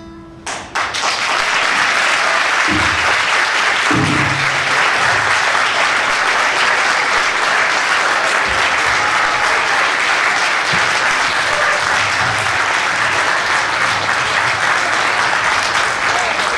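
The last note of a nylon-string classical guitar rings briefly. About a second in, an audience breaks into loud applause that goes on steadily.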